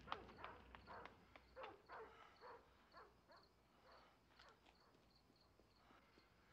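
Faint outdoor night ambience: crickets chirp steadily. Over them, a run of short animal calls, each falling in pitch, comes quickly at first, then slows and fades out within the first few seconds.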